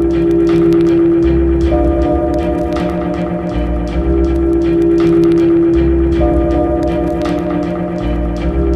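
Background music: sustained chords over a bass line that changes note every second or so, with light ticking percussion.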